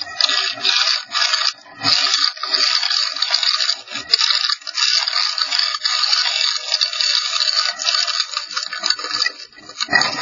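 Continuous harsh scraping and rattling with no deep tones, rising and dipping in loudness every fraction of a second, as of something rubbing against the inside of a chimney flue.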